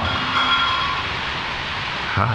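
Steady, even background hiss with no clear source, fairly loud.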